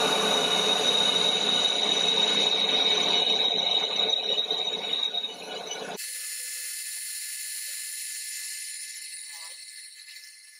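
Metal lathe turning a cast-iron chuck back plate: a loud, steady, gritty cutting noise with a high whine through it. It cuts off suddenly about six seconds in, leaving only a fainter high-pitched sound that fades away near the end.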